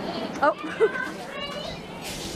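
Children's voices: short high-pitched calls and chatter, with one rising call about half a second in and another high one near the middle.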